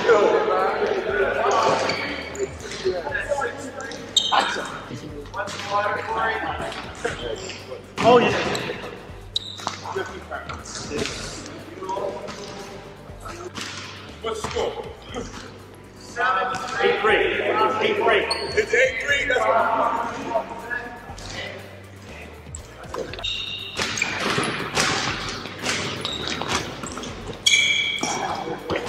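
A basketball bouncing on a hardwood gym floor, mixed with players' indistinct voices, with one sharp impact about eight seconds in.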